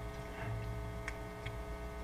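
A pause in speech: a low steady electrical hum through the sound system, with a few faint ticks.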